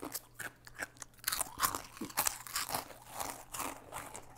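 A fortune cookie being broken open and chewed: a run of crisp, irregular crunches.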